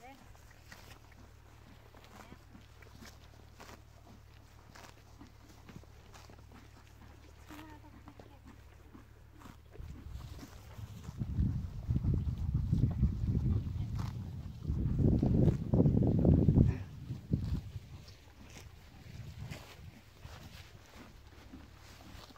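Horse grazing close by: repeated short crisp clicks of grass being torn and chewed. About ten seconds in, a louder low rumbling noise comes and goes for roughly seven seconds, then dies down.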